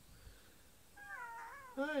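Domestic cat giving one drawn-out meow about a second in, its pitch wavering up and down.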